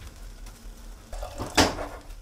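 One short clatter of kitchenware about one and a half seconds in, from pots and utensils being handled on the stove; otherwise low room sound.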